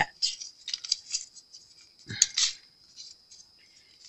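Folded paper slips rustling and crinkling as they are handled and pulled apart in a plastic tub, with a louder brief crinkle about two seconds in.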